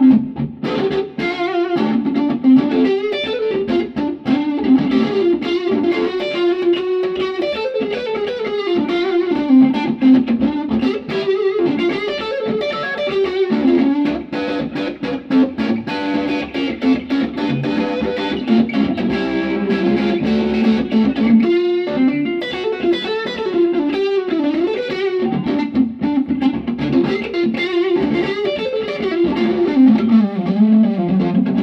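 Suhr Classic Antique electric guitar played through the gain channel of a Kingsley D32C amp with Celestion Gold and G12-65 speakers: overdriven melodic lead lines and phrases, with a brief break a little past two-thirds through.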